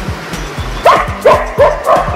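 A dog barking four times in quick succession, short sharp barks about a third of a second apart, over background music.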